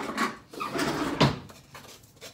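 A spoon and a metal mesh strainer of rinsed quinoa clattering together at a kitchen counter: a few knocks and clinks, the loudest just over a second in.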